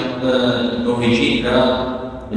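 A man's voice, drawn out on long, held pitches like chanting or recitation.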